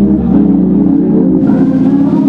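Hammond B3 organ playing sustained chords over a held bass note, the upper chord changing and brightening about a second and a half in.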